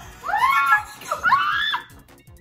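Two loud, high-pitched excited shrieks from young people, the pitch of each sweeping up and back down, with a short gap between them.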